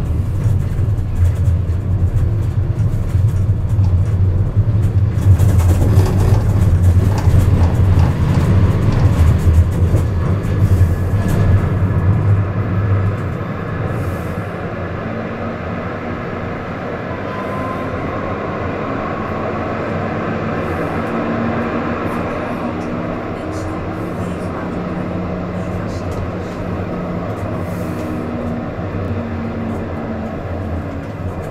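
Siemens Avenio tram running on its rails, heard from the driver's cab: a loud low rumble of wheels on track for about the first dozen seconds, then quieter running with steady hums from the electric traction drive.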